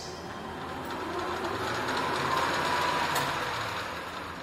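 Centre lathe started at its switch, the motor and headstock drive running with a whining hum that builds over the first two to three seconds. A click comes about three seconds in, after which the sound starts to die away.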